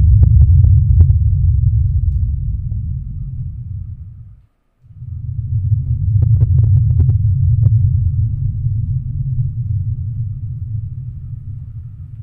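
A deep, low rumble that slowly fades, cuts to silence about four and a half seconds in, then swells back and fades away again, with faint crackles over it.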